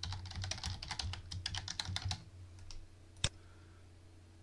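Typing on a computer keyboard: a quick run of keystrokes for about two seconds, then a single click a little over three seconds in.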